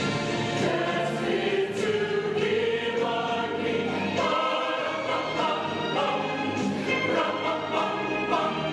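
A choir singing.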